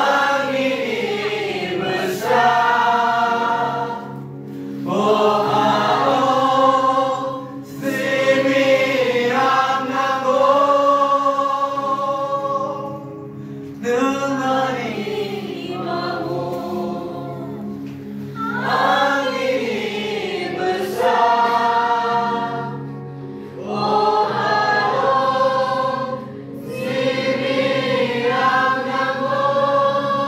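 A worship song sung by a group of voices, phrase after phrase with short breaths between, over steady low held accompaniment notes.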